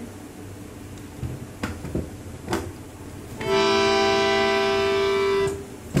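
Double reed portable harmonium sounding one steady held note for about two seconds, starting a little past halfway, after a few light knocks from the instrument being handled. The note cuts off sharply.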